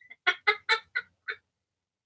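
A woman laughing: five quick, pitched bursts of laughter in a little over a second, the middle ones loudest.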